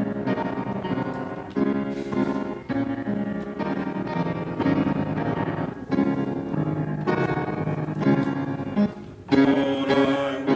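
Piano playing a slow introduction of held chords, a new chord struck about every second. Near the end the sound grows fuller as the choir begins to sing.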